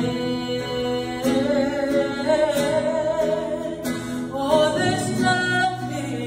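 A woman singing a worship song solo into a microphone, holding long, wavering notes, accompanied by an acoustic guitar.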